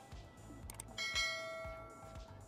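A bright bell chime struck once about a second in and ringing down over the next second, just after two short clicks: the sound effect of a subscribe-button animation.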